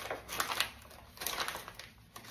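Salt being added over minced meat in a glass bowl: short bursts of rapid, gritty clicking, twice in quick succession.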